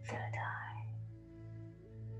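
A woman's breathy, whispered exhalation through the open mouth, lasting under a second at the start. It sits over a soft ambient music drone of steady held tones.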